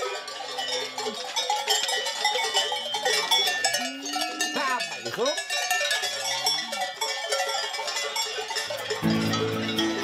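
Many cowbells clanging and ringing unevenly as a herd of brown heifers is driven along a mountain slope, with several drawn-out calls rising and falling in pitch in the middle. Music comes in about a second before the end.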